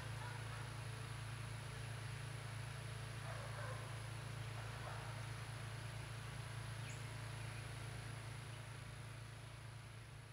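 Faint outdoor ambience with a steady low hum, fading out near the end.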